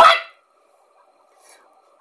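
A man's short, sharp exclaimed "what?" at the very start, then near silence with only a faint hiss.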